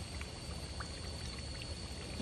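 Crushed dried chili flakes frying in hot oil in a pan: a steady sizzle with a few small crackles.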